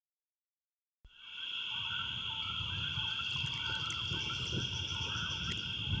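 Silence for about a second, then swamp ambience fades up: a steady high-pitched insect drone with warbling wildlife calls beneath it and a low rumble.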